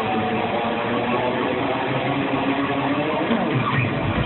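Live band music with guitar, heard through a hall's sound system from the audience, with a falling pitch slide near the end.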